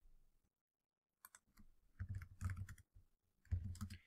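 Faint computer keyboard typing: a couple of keystrokes a little over a second in, then a quick run of keystrokes through the second half as a terminal command is typed.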